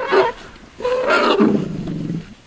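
African elephant calling: a short cry at the start, then a longer bellow about a second in that falls in pitch.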